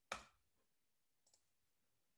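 Near silence, broken by one short click just after the start and a much fainter one about a second later: computer mouse clicks.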